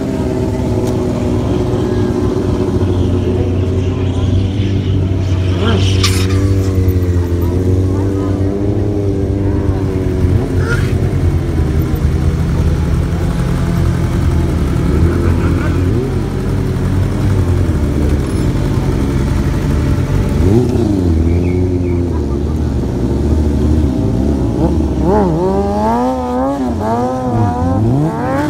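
Sportbike engines running and being revved, a low steady drone with the pitch drifting up and down. Near the end the revs rise and fall in quick repeated swings.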